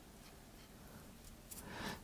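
Faint rubbing and handling of a Viltrox EF-M2 lens mount adapter as fingertips scrub glue residue off its body, with a few soft clicks. A slightly louder rustle builds near the end.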